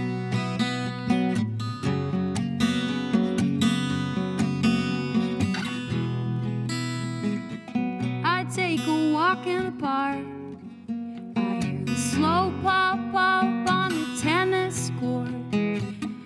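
Acoustic guitar strummed in a live song, instrumental at first, with a woman's singing voice coming in about halfway through.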